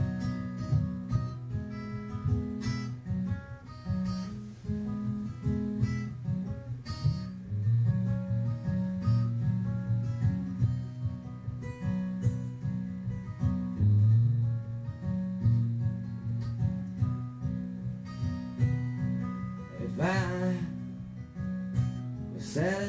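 Solo steel-string acoustic guitar playing the slow fingerpicked introduction to a folk song, in steady, evenly paced notes. A man's singing voice comes in near the end.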